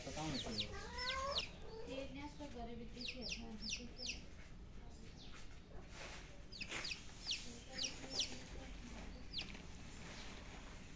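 A young chick peeping: short, high calls that drop in pitch, coming in runs of two to four every second or two.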